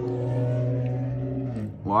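A man's long, steady closed-mouth "mmm" hum as he savours a hot pepper. It holds one pitch and stops about a second and a half in, just before a spoken "wow".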